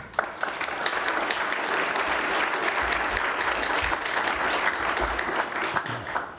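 Audience applauding steadily, a room of seated people clapping to welcome a speaker, dying away at the very end.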